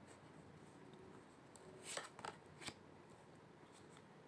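Tarot cards being drawn from a hand-held deck: three short papery card rustles about two seconds in, as a card is slid off and laid on the table.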